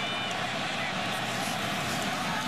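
Steady crowd noise from a large stadium crowd during a football game.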